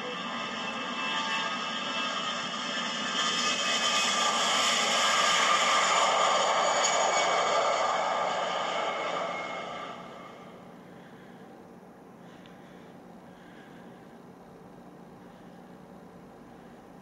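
Closing sound of a music video played back: a rushing, noisy swell that builds for about five seconds, then fades away by about ten seconds in, leaving a low, steady background.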